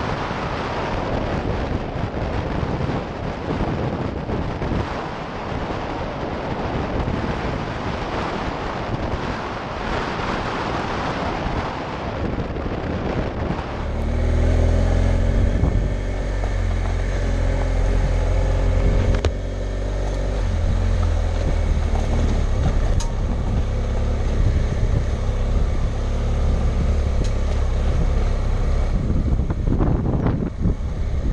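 Wind rushing over a helmet-mounted camera on a BMW motorcycle riding at road speed. About halfway through this gives way to the motorcycle's engine running with a steady low drone at slower speed on gravel, with less wind.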